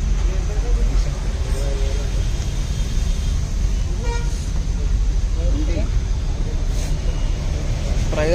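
Steady low rumble of street and traffic noise with faint voices in the background, and a brief pitched tone about four seconds in.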